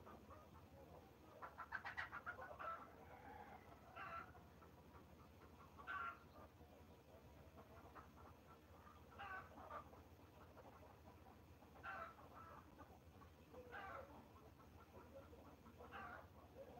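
Faint animal calls: a quick rattle of clicks about two seconds in, then short single calls repeating every two seconds or so.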